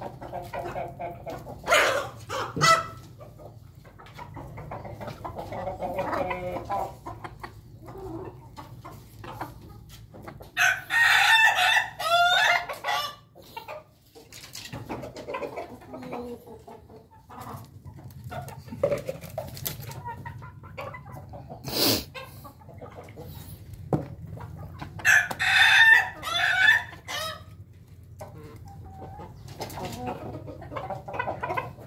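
Roosters crowing: two long, loud, wavering crows, one about ten seconds in and one near twenty-five seconds, with softer chicken clucking between. A couple of sharp knocks come near the start and about two-thirds of the way through.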